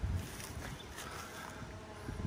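Wind buffeting the microphone, a steady low rumble, with a few faint handling noises as the camera is moved.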